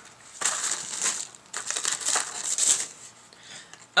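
Paper and cardboard crinkling and rustling as a subscription box is opened and its wrapping is pushed aside, in a few bursts that die down near the end.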